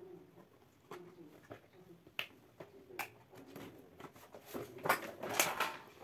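A picture frame being opened by hand: a few separate small clicks about a second apart, then a louder run of scraping and paper rustling as the drawing is slid out of the frame near the end.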